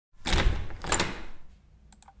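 Intro sound effect for the title card: a noisy, unpitched rush with two swells, the second about half a second after the first, fading out by about a second and a half.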